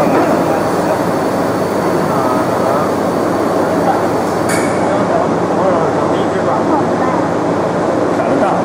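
Loud, steady factory-floor noise: machinery running with indistinct voices mixed in. One sharp click about four and a half seconds in.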